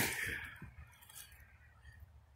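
Faint low rumble of distant interstate traffic with a few soft clicks; the last spoken word trails off at the very start.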